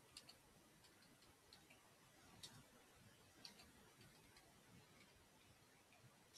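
Faint, irregular clicks of computer keyboard keys, typed a few at a time with pauses, the loudest about two and a half seconds in.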